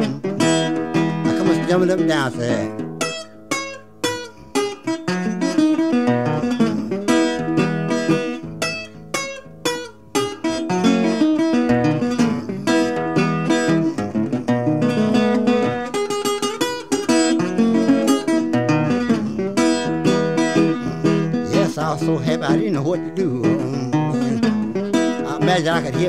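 Solo acoustic blues guitar picked in an instrumental break, with crisp single-note plucks and chords. It thins to sparser, quieter picking a few seconds in and again around ten seconds.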